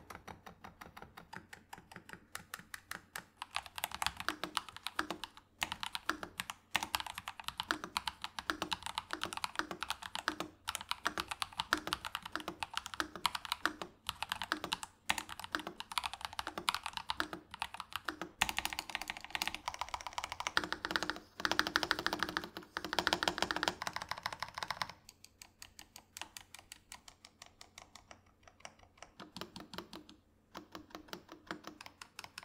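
Typing on mechanical keyboards. For the first few seconds it is the Epomaker RT100 with Epomaker Sea Salt Silent switches, quieter. After that it is the Cidoo ABM098 with Quark Matte switches: a steady run of louder keystrokes, a stretch of fast continuous typing about two-thirds of the way through, and slower single key presses near the end.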